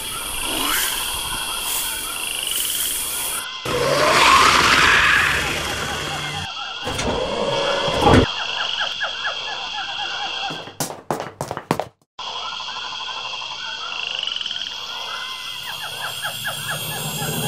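Frogs croaking in a steady chorus over a constant high tone, laid on as a sound-effect soundtrack. A broad whooshing rumble swells about four seconds in, and a few sharp clicks and a brief dropout come near the twelve-second mark.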